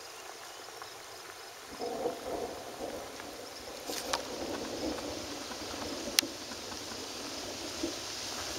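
Steady hiss of rain and running flood water. A low rumble comes in about two seconds in and continues, and a sharp click stands out about six seconds in.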